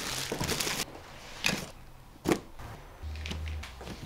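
Handling noise from packing and closing a soft fabric suitcase: a short rustle, then a few separate sharp knocks and thunks.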